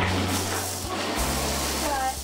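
Water rushing and gushing in a jetted bathtub, over background music with steady low bass notes.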